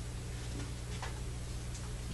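Quiet room tone: a steady low hum under faint hiss, with a couple of faint ticks about one second in and near the end.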